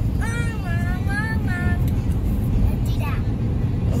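Steady road and engine noise inside a moving pickup truck's cab, a constant low rumble at highway speed.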